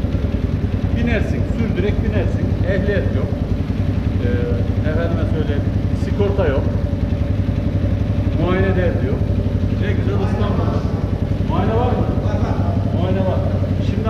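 Kuba TK03 motorcycle's small single-cylinder engine, enlarged from 50 cc to about 180-200 cc, idling steadily, with voices talking over it.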